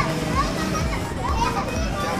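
Background voices of children playing and people chattering, over music with a low, steady beat.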